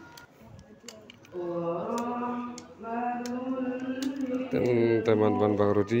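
A voice chanting long, melismatic held notes in the style of melodic Qur'anic recitation (tilawah), starting about a second in. It gets louder with a wavering, ornamented phrase near the end.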